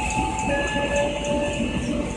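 KA Pasundan passenger coaches rolling slowly past on departure: a steady low rumble from the wheels and running gear. Thin, steady high-pitched squeals come in about half a second in.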